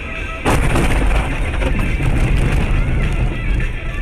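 A car crash heard from a dashcam: a sudden loud crash about half a second in, then continuous loud rumbling noise as the car runs off the road into the snow. Background music plays underneath.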